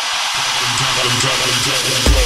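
Techno breakdown: the kick drum drops out and a building noise sweep rises over a bass line that comes in about a third of a second in.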